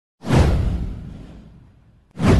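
Whoosh sound effect for an animated logo intro: one sudden swell with a deep low rumble beneath it, falling in pitch and fading away over about a second and a half.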